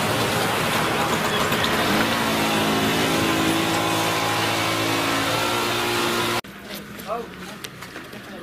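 Street noise dominated by a motor vehicle engine running close by, with voices mixed in; the engine's pitch rises briefly about two seconds in and then holds steady. The whole sound cuts off suddenly about six seconds in, leaving quieter voices.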